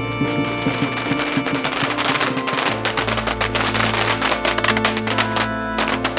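Music with long held tones, joined about two seconds in by a dense, irregular crackle of a firecracker string that keeps going.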